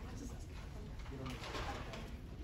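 Low, murmured talking with a steady low room rumble, and a brief rustle about three quarters of the way through.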